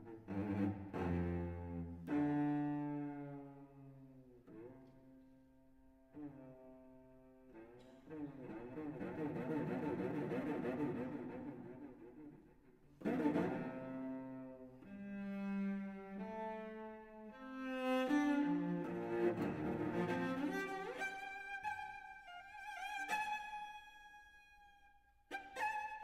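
Solo cello playing bowed, sustained notes that swell and fade, with sharp attacks about two seconds in and again about halfway, short slides in pitch, and high notes climbing near the end.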